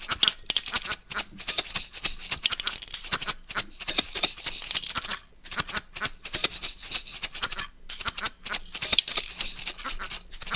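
Layered hand shakers play a fast, steady rhythm of bright, rattling seed strokes. The rhythm drops out briefly about five seconds in.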